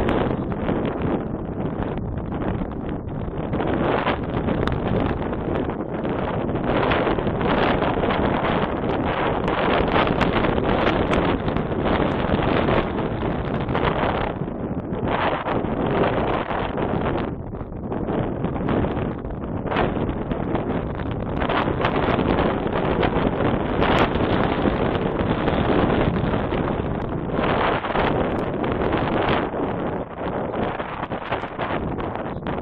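Wind buffeting the microphone: a loud, rushing noise that swells and eases in gusts every few seconds.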